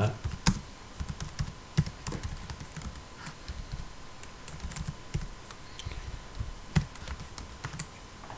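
Keystrokes on a computer keyboard: irregular typing clicks, with a few louder key strikes about half a second in, near two seconds and near seven seconds.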